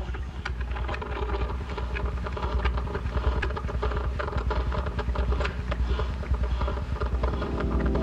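Fading-in ambient intro of a lo-fi hip hop track: a steady low rumble with scattered clicks and crackle over it. Near the end a sustained keyboard chord comes in.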